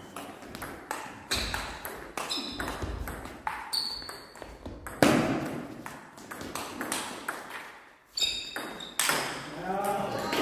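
Table tennis rally: the ball clicks off the rubber bats and pings on the table in quick back-and-forth succession, with one much louder hit about halfway through. The clicks stop shortly before the end, where a voice is heard.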